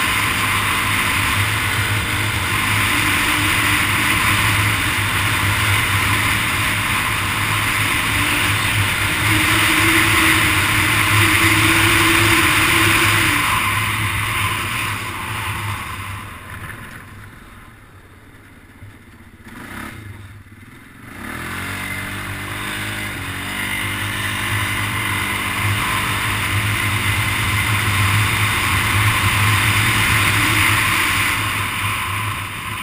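ATV engine running under way, with wind buffeting the microphone. About halfway through the engine drops off as the throttle is let off, then revs back up with a rising pitch and pulls steadily again.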